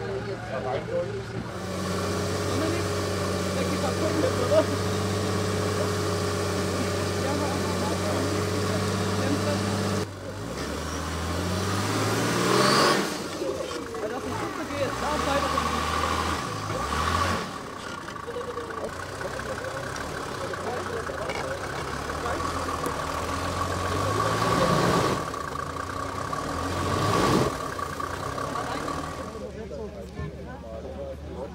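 Mercedes-Benz G-Class off-roader's engine running steadily, then revving up and falling back several times under load as it climbs a steep dirt slope, over a steady high whine.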